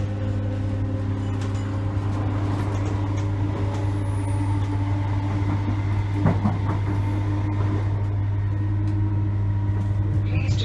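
Class 321 electric multiple unit pulling away and gathering speed, heard from inside by the doors: a steady hum from its traction equipment with several held tones, and a few short knocks from the wheels about six seconds in.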